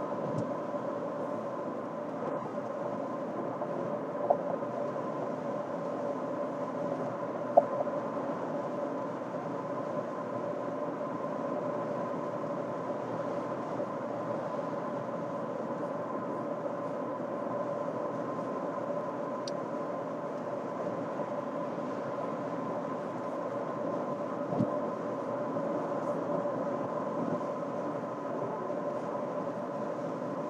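Steady road and tyre noise inside a 2024 Toyota RAV4's cabin cruising at highway speed, with an even hum under it. Three short clicks stand out, about four seconds in, near eight seconds, and late on.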